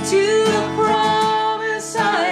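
A woman singing a worship song to strummed acoustic guitar.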